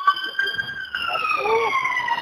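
Fire engine siren wailing, its pitch rising slowly in the first half and then falling.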